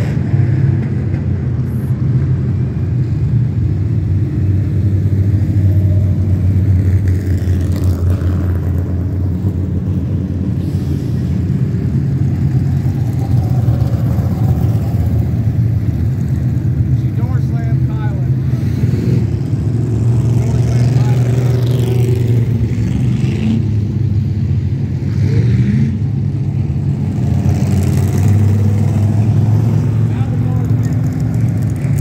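Dirt-track stock car engines running loud as the cars race around the oval, a steady drone that swells and fades as cars pass, with revving in the second half.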